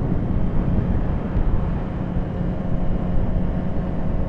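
Steady wind rush over the microphone and the constant drone of a Suzuki GSX-R600 sportbike's engine cruising at an even, moderate pace.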